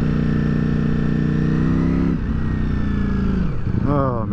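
Ducati Streetfighter V4S's V4 engine under way, its pitch climbing steadily as it pulls for about two seconds. The pitch then drops sharply, and it sinks further near the end as the bike slows for a bend.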